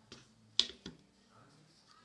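Plastic spring clamps clacking as they are handled and set onto a thin ebony strip on a wooden bench: three sharp clicks, the middle one loudest.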